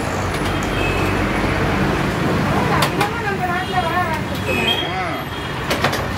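Steady road-traffic rumble with voices talking in the background and a few light clicks.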